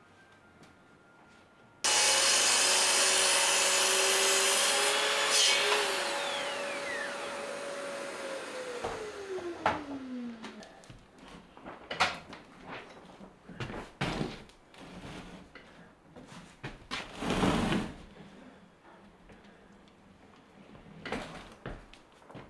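A sliding mitre saw and its dust extractor start abruptly and run loud through a cut, then the motor whine winds down in a falling pitch over about two seconds. After that come scattered knocks and clatters of timber being handled.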